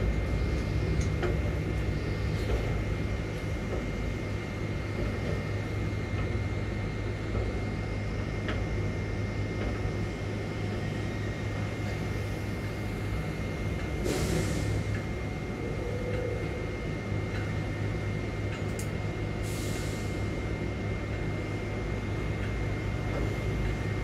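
Grab crane machinery running with a steady low drone and a thin steady whine while its grab hangs on its wire ropes over a bulk-cargo hold. There are two short hisses in the second half.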